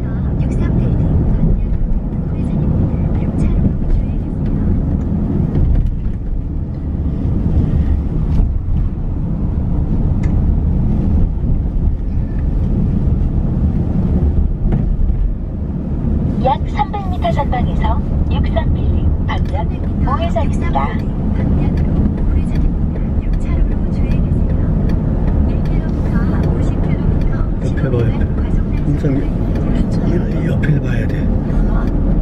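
Steady low road and engine rumble inside a moving car's cabin, with some short sliding pitched sounds partway through.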